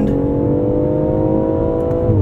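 2019 BMW X4 M40i's turbocharged inline-six heard from inside the cabin, pulling hard in third gear under acceleration, its pitch climbing steadily, over a bed of tyre and road noise.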